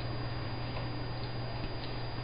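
Two dogs play-wrestling, with a few faint, soft clicks from their mouthing over a steady low hum.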